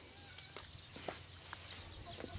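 Faint sounds of chickens in a coop run, with a few soft footsteps on the straw-covered dirt floor.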